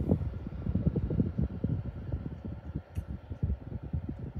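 Winix PlasmaWave air purifier running, its fan blowing air up out of the top grille onto the microphone as a loud, irregular low buffeting rumble.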